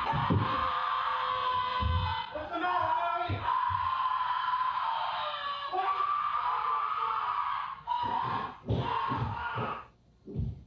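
Horror-film soundtrack: a woman screaming at length from another room, with a man's yells, broken into short bursts near the end and then cut off into near silence.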